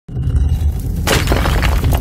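Sound effect for an animated title: a deep rumble, then about a second in a sudden crash of cracking and shattering that keeps crackling.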